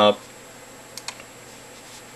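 Two faint computer clicks close together about a second in, over a steady hiss.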